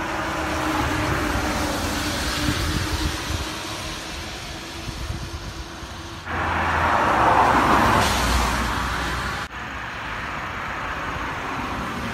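Outdoor background noise like road traffic: a steady noise with a faint low hum, growing louder for about three seconds in the middle. The sound changes abruptly twice, at cuts between clips.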